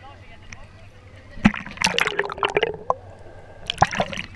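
Shallow sea water sloshing and splashing around a camera held at the water's surface, with a gurgle and a burst of splashing in the middle and sharp clicks about a second and a half in and near the end.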